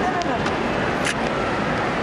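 Busy outdoor ambience of road traffic and overlapping voices, with one short click about a second in.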